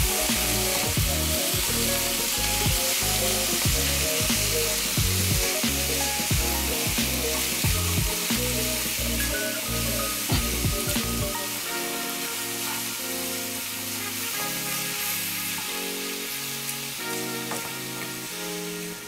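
Ground beef sizzling on high heat in a metal skillet as it is broken up and stirred with a wooden spoon, with background music playing. The music's deep bass notes drop out about two-thirds of the way through.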